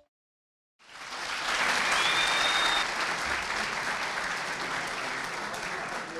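Audience applauding in a hall. The clapping fades in about a second in after a moment of silence, then slowly tapers off.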